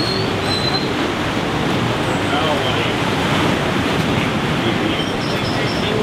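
Steady wash of ocean surf on a beach, with people's voices chatting faintly in the background.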